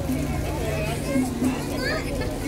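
Indistinct chatter of several people talking at once, no single voice clear, over a low steady hum.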